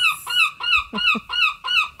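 A herring gull calling: a rapid, steady series of short arched notes, about four a second.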